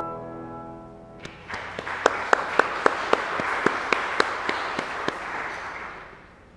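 The last chord of a church organ dies away, then the congregation applauds for about four seconds, one clapper standing out with sharp, evenly spaced claps, before the applause fades out near the end.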